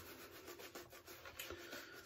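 Faint rubbing and scratching of a shaving brush swirling lather over a shaved scalp.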